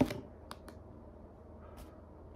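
Small clicks from hands handling craft materials on a cardboard work surface: one sharp click at the start, then two fainter clicks about half a second later.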